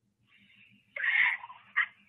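Short breathy vocal sounds from a caller heard over a telephone line, thin and tinny: a burst about a second in and a shorter one near the end, over faint line hiss.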